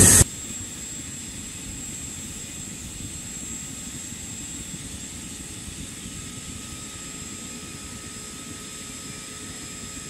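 Steady low roar of a flame-fired melting furnace's burner heating a cupel, with a faint high steady whine over it. A louder burst of the same roar cuts off a moment after the start.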